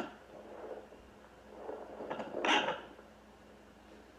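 A woman's short, breathy laugh, peaking about two and a half seconds in, over a faint steady low hum.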